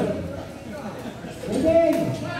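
People talking and calling out, with one voice rising louder near the end.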